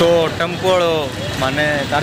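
A man talking, with street traffic noise running underneath.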